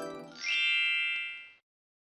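Intro jingle: the last glockenspiel-like mallet notes fade, then a quick upward sweep leads into a bright chime-like ding about half a second in, which rings for about a second and cuts off suddenly.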